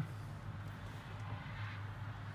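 A faint, steady low hum with a light background hiss.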